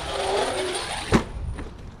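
Traxxas X-Maxx 8S RC monster truck in the air off a jump, its electric motor whining in a falling tone, then a single sharp thud a little over a second in as it lands.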